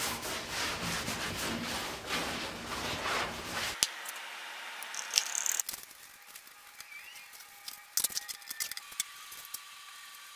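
Fiberglass cloth being handled and rubbed down by hand, a rough, rhythmic rustling that cuts off suddenly about four seconds in. After it, much quieter brushing of epoxy onto the wooden shell's edge, with a few light clicks near the end.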